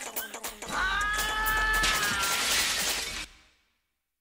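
End of an a cappella vocal mix with beatboxing: a few sharp beatboxed clicks, then a long held wailing vocal note over a low rumble. A burst of high hiss follows and fades out to silence a little after three seconds.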